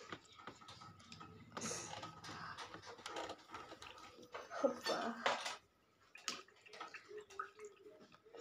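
Quiet stretch of small handling noises, a few faint clicks and rustles, with low voices murmuring faintly about halfway through.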